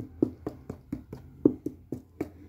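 Fingers tapping and knocking on the hard shell of a Bauer hockey skate boot, about eight irregular taps, the loudest about a second and a half in.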